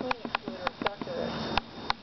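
A series of sharp, irregular clicks and light knocks, about eight in two seconds, from wooden beehive boxes and their parts being handled.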